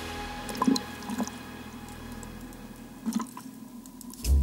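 A few drips and small splashes of lagoon water, about a second in and again near three seconds, while background music fades out.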